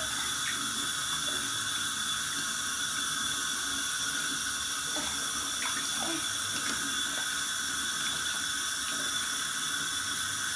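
Bathtub tap running steadily, a thin stream pouring into bath water, with a few faint splashes around the middle.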